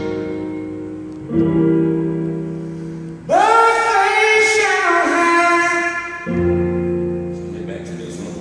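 A man sings gospel-style over sustained chords on a Roland electronic keyboard. New chords come in about a second in and again near the end. The loudest part is a long sung phrase from about three seconds in that rises and falls in pitch.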